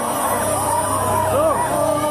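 Live male vocal through a concert PA, the voice bending up and down in quick ornamented runs over sustained backing music.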